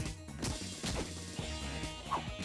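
Action-cartoon soundtrack: background music under a series of sharp hit-and-crash sound effects, about one every half second.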